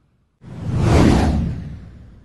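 Whoosh sound effect from an animated logo intro: one rush that swells up about half a second in, peaks near the middle and fades away.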